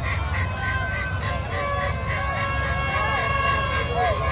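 Fairground din: many people talking at once over a low rumble, with steady electronic tones, wavering siren-like sounds and a rapid high beeping at about four a second, typical of amusement rides and game stalls.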